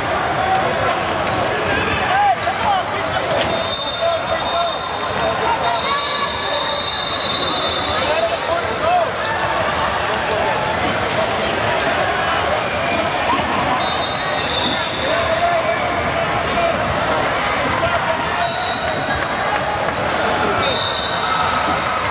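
A basketball being dribbled and bounced on a hardwood court, with many people's voices echoing around a large gym. A thin high tone comes and goes several times.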